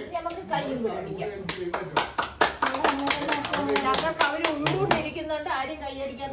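Hands clapping: a quick run of sharp claps from about a second and a half in until about five seconds, over women talking.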